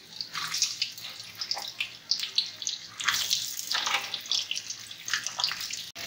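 Potato wedges sizzling in hot mustard oil with panch phoron in a kadhai: a steady hiss with irregular crackles and spits.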